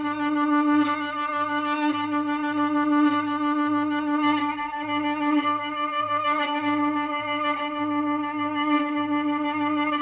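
Turkish regional folk dance music (oyun havası) from the Bolu area: a violin holds one long, steady note over a low beat that pulses about twice a second.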